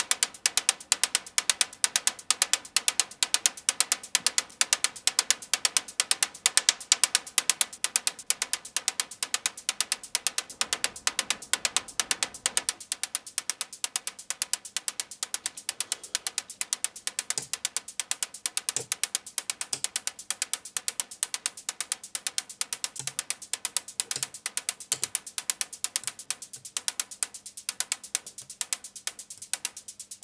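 Synthesized techno hi-hats from a Doepfer A-100 analog modular synthesizer: a fast, even stream of sharp, bright ticks. In the second half a few soft low blips join in, and near the end a low steady tone enters while the ticks lose some of their brightness.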